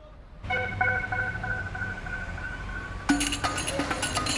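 Background music fading in from silence: held, sustained notes, then a percussive beat comes in about three seconds in.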